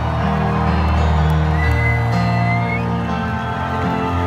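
Live rock band playing through an arena PA, heard from within the audience: sustained, slowly changing chords over a steady low end, with a long high held note about halfway through.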